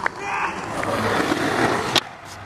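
Skateboard wheels rolling over asphalt, growing steadily louder after a sharp click at the start, then cutting off abruptly at the end.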